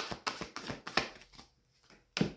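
A deck of oracle cards being shuffled by hand: a quick run of light card clicks and flicks that stops about a second and a half in.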